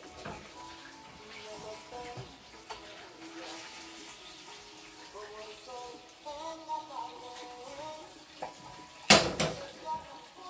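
Quiet background music with a slow stepping melody, with a few light clinks of kitchenware. About nine seconds in, one loud clank of a frying pan and spatula.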